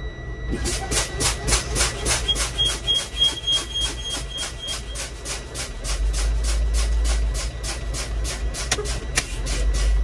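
Truck air brakes being fanned: the brake pedal pumped rapidly, each release venting air in a short hiss, about four a second, over the diesel idle. This bleeds the air pressure down to test that the emergency (spring) brake valve pops out between 40 and 20 psi.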